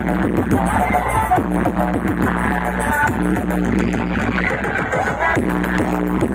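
Loud electronic dance music with a steady heavy bass, played through DJ speaker stacks mounted on vehicles.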